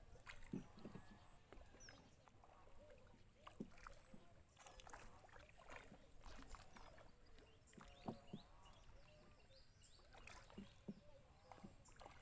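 Near silence on calm water from a small boat moving slowly: faint scattered splashes and knocks of water against the boat, a few slightly louder ones near the start and again about eight and ten seconds in.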